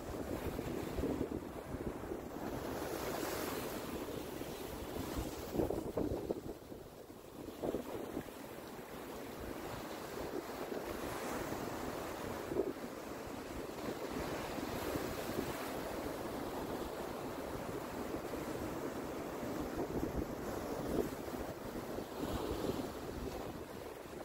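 Small sea waves washing up over wet sand and breaking around rocks, the surf swelling and easing every few seconds, with wind buffeting the microphone.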